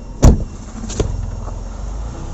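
A car door shutting with one heavy thump about a quarter-second in, then a lighter click about a second in, over a low steady rumble.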